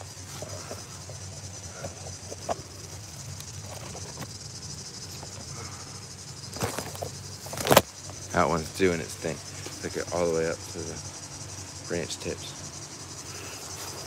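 Steady high-pitched chirring of insects, with a low steady hum beneath it. A sharp knock about eight seconds in, followed by a few seconds of low voice sounds.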